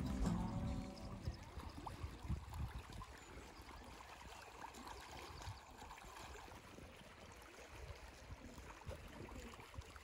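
Background music fading out in the first second, then faint water lapping against the shoreline stones of a loch, with occasional low thumps.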